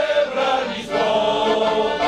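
Men's choir singing a Polish patriotic song, holding long notes, with an accordion accompanying.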